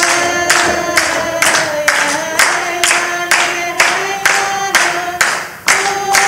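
A congregation singing a festive song together and clapping in time, about two claps a second, over a sustained sung melody.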